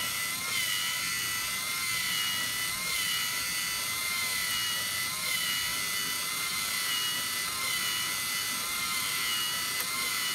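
Two LEGO EV3 servo motors running at full speed, turning plastic gears that drive a drawing arm: a steady high whine with a faint regular wavering.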